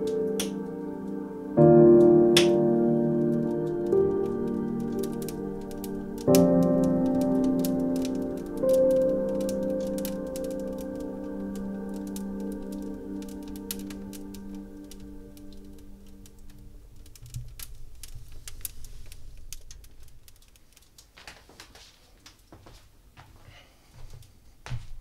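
Soft sustained music chords, struck a few times and fading out over the first two-thirds, over a wood fire crackling in a fireplace. Near the end only the fire's scattered pops and snaps are left.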